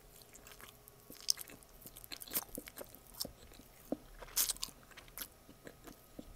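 Close-miked mouth chewing a piece of gaz, Persian pistachio nougat: an irregular run of sticky smacks and wet clicks, the loudest about four and a half seconds in.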